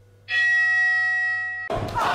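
A bell struck once: a clear ringing chime with several overtones that slowly fades. About a second and a half later it is cut off by a loud, noisy burst of sound.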